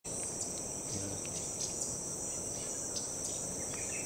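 Steady, high-pitched insect chorus of tropical forest, with a few faint short ticks over it.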